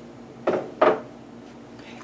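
Two short clinks of kitchenware, about a third of a second apart.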